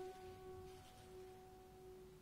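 Yamaha C5 grand piano: a single soft note held and ringing on quietly with its overtones, slowly fading.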